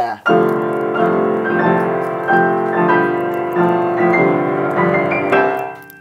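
Upright piano played solo, chords struck about every two-thirds of a second and ringing on between strikes, fading near the end.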